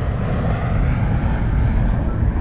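A loud, deep rumble with no clear tones, swelling slightly about half a second in and holding steady.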